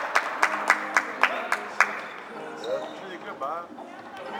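Sharp clacks of floorball sticks striking the plastic ball and each other, about four a second for the first two seconds, followed by a few short shouts from players.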